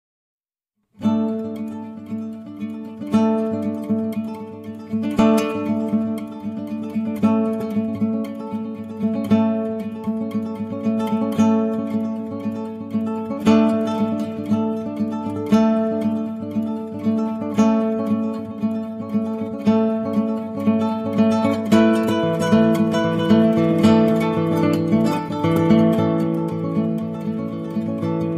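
Background music: acoustic guitar picking notes, starting about a second in after brief silence, the playing growing fuller near the end.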